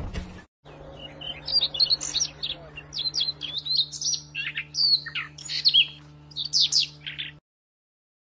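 Small songbirds chirping in quick, high-pitched twitters over a faint steady low hum; it cuts off suddenly near the end.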